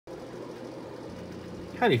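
A steady, faint mechanical hum of background room noise, with a man's voice starting near the end.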